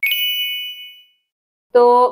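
A single bright ding, like a small bell or chime, struck once and ringing out over about a second, used as a transition sound effect. Silence follows until a woman's voice resumes near the end.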